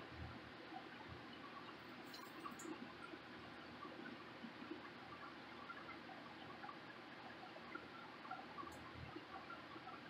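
Very faint sounds of a wooden stir stick working through a can of paint, soft wet stirring with a few small clicks, over quiet room tone.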